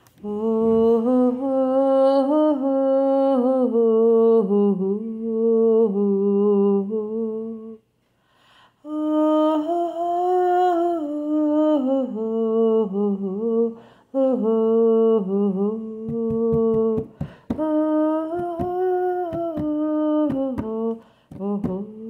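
A single voice humming a slow melody in long held phrases, pausing briefly about eight and fourteen seconds in. A quick run of soft taps comes in partway through, with a few more near the end.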